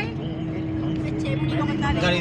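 Car cabin noise from a moving car: engine and road rumble with a steady hum running under it.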